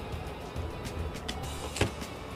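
Crunching and chewing on a bite of crispy fried chicken coating, a scatter of short clicks and crackles, over quiet background music with a low beat. Near the end a brief sweeping sound stands out as the loudest thing.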